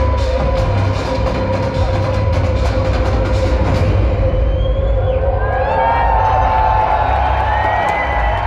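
A progressive metal band ends a song live: a held note rings under drum and cymbal hits, which stop about halfway. The crowd then cheers over the fading chord.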